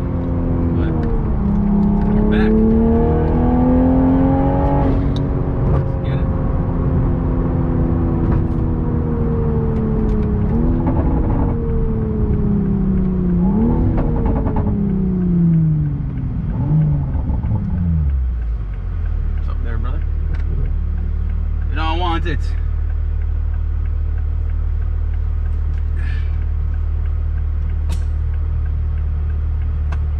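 Toyota Supra's engine heard from inside the cabin, its note falling as the car slows, with a few quick rises in pitch along the way. About eighteen seconds in it settles into a steady low idle.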